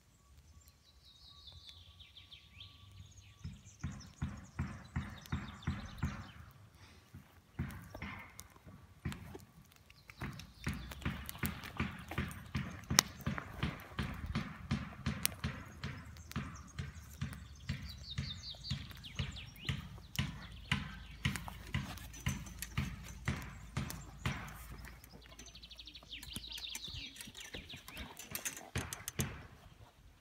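Even, regular steps, about two a second, through most of the stretch. Birds sing near the start and again near the end.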